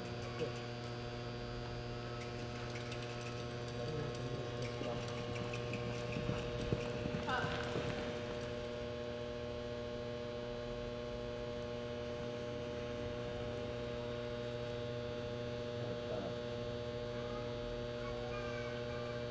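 Steady electrical mains hum with a stack of overtones, running evenly throughout.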